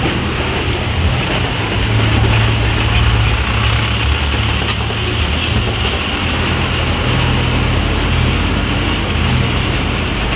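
Diesel engine of an Isuzu garbage truck with a compactor body running steadily in a low gear as the truck passes close by and pulls away.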